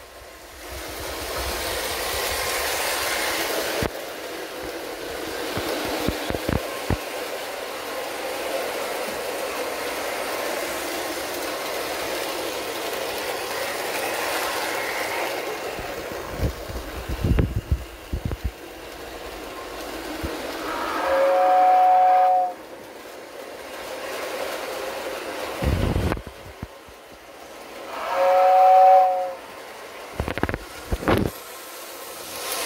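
Lionel 646 steam locomotive pulling a 2046W whistling tender on O gauge tinplate track: a steady rolling rattle of motor and wheels for the first half, then a few knocks. Later the tender's electric whistle gives two blasts of about a second and a half each, several seconds apart, each a two-note chord.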